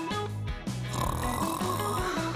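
Background music with a snoring sound coming in over it about halfway through, from a person asleep.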